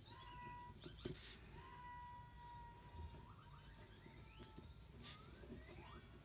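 Faint scratching of a ballpoint pen writing on paper, with thin squeaky tones over it, one held for about two seconds and a couple rising near the end.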